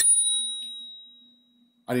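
Bicycle bell struck once: a single ding whose bright ringing fades away over about a second and a half.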